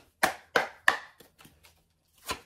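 Tarot cards being handled on a table: three sharp taps in quick succession within the first second, then quiet.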